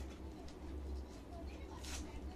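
Soft rustling of shiny crepe suit fabric being handled and smoothed by hand, with a brief swish near the end, over a steady low hum.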